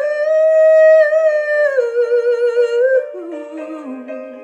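A woman's voice singing one long wordless note with a slight waver, stepping down in pitch about halfway through and giving way near the end to softer, lower notes, over quiet musical accompaniment.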